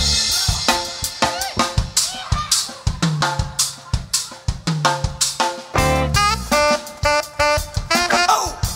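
Drum kit break in a live funk band: fast snare, kick and tom hits, with tom notes dropping in pitch in places. Horn notes come in near the end.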